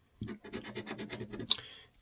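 A coin scratching the coating off a scratch-off lottery ticket in quick back-and-forth strokes, roughly ten a second, ending with one sharper click.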